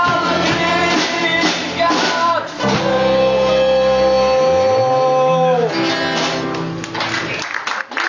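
Live acoustic rock performance: a man singing lead over two strummed acoustic guitars. He holds one long note, then the song stops about six seconds in and the last chord fades.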